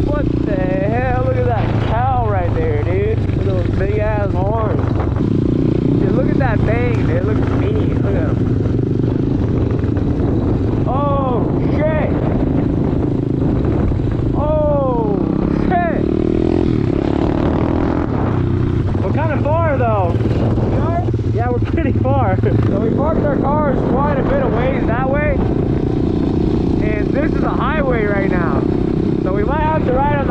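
Pit bike's small single-cylinder four-stroke engine running under way, its pitch rising and falling over and over as the throttle opens and closes, with another pit bike riding ahead.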